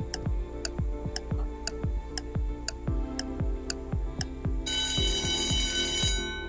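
Quiz countdown-timer music: an even ticking beat of about three ticks a second, each tick with a low thump, over held notes. A bright alarm-like ring comes in near the end as the timer runs out.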